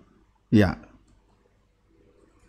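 Speech only: a man says one short word, 'iya', with a sharp click as it starts, then quiet room tone.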